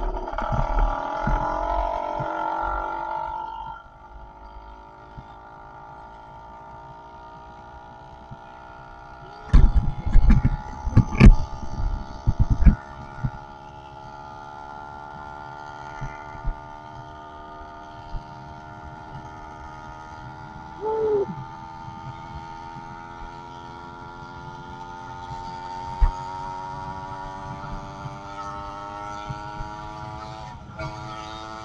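110cc two-stroke engine of a motorized bicycle running under way, its pitch slowly rising as the bike picks up speed, louder for the first few seconds. About ten seconds in come a couple of seconds of loud thumping and rattling.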